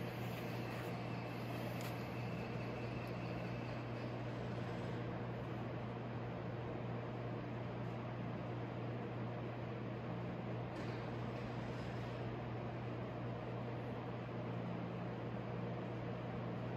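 Battery charger humming steadily at a low pitch under a faint hiss while it charges a motorcycle battery.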